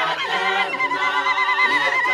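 A group of men and women singing together unaccompanied in harmony. From under a second in, one high voice holds a wavering, vibrato-like note above the rest of the choir.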